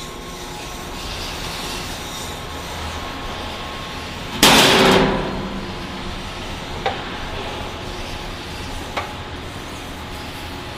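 Steady machine hum from the kettle's 7½ HP scrape agitator drive running. About four and a half seconds in, a loud sudden burst of noise lasts about half a second and then fades, and two short sharp clicks follow, near seven and nine seconds.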